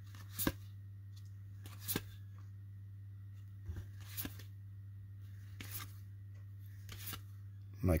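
Baseball trading cards being flipped through by hand, one card slid off the front of the stack every second or so, each giving a short, sharp slide or snap of card stock. A steady low hum runs underneath.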